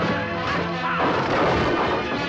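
Musicians' wooden stage collapsing with a loud crash about a second in, over music.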